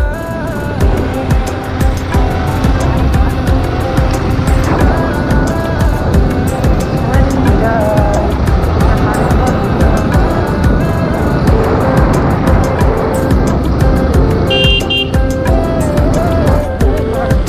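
Background music over the running engine and wind noise of a Bajaj Pulsar motorcycle being ridden.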